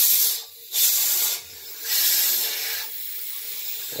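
Compressed air hissing out of a homemade vapor blaster's blast gun in three short bursts, each under a second long, as the air is turned up.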